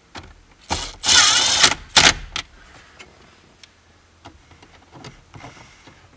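Cordless impact driver briefly spinning a screw into a plastic dashboard: a short blip, then a run of under a second starting about a second in, and a quick final burst. After that come only faint clicks as it is handled.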